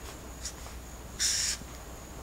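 A felt-tip marker scratching on the writing surface: a short stroke about half a second in, then a longer, louder stroke of about a third of a second near the end, drawing a line. A faint steady low hum lies underneath.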